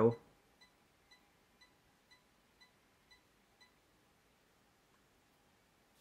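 Faint short beeps of a 1 kHz test tone, about two a second and seven in all, stopping about three and a half seconds in: the tone-burst signal driving a Crown XLS 2000 amplifier, bridged into a 4-ohm resistive load, for a dynamic headroom test.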